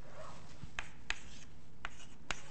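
Chalk writing on a blackboard: scratchy strokes with three sharp taps of the chalk against the board.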